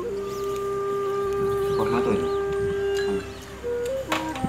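Music playing, with one long held note for about three seconds that steps to a new note near the end.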